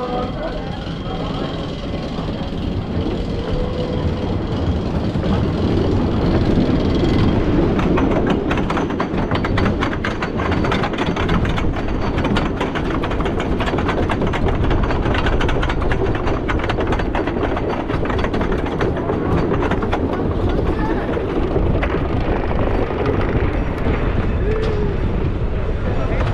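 Wooden roller coaster train leaving the station and climbing the chain lift hill, heard from the front seat. From about eight seconds in, the lift chain and anti-rollback dogs give a dense, rapid clicking clatter that runs on as the train climbs.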